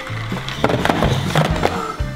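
Background music, with several knocks and a clatter as small cardboard boxes tumble out of a tipped cardboard tube onto a table.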